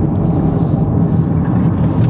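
Turbocharged K20C1 2.0-litre four-cylinder of a tuned 2021 Honda Accord, heard from inside the cabin, running with a steady drone at an even engine speed. A brief airy hiss comes in about half a second in.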